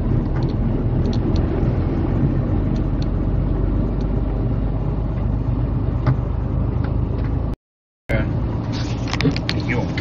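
Steady low engine drone and road noise heard inside a vehicle's cab as it drives slowly in traffic. The sound cuts out for about half a second near three-quarters of the way through.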